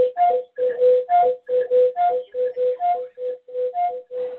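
Garbled, tone-like audio coming in over a phone-line connection instead of the testifier's voice: a rhythmic beeping, about four short pulses a second with a higher note about once a second. It is the sign of a broken connection: the testifier cannot be heard.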